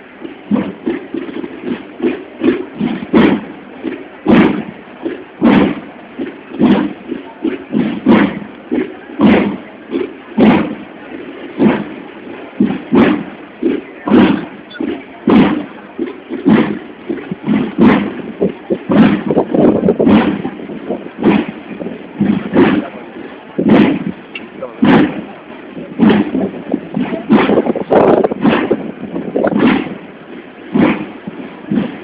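Procession drum beaten in a steady march, roughly two sharp strokes a second, over the murmur of a crowd.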